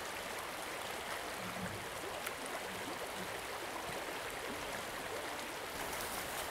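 Steady, even rushing of a flowing creek, with no other clear sound except a faint tick about two seconds in.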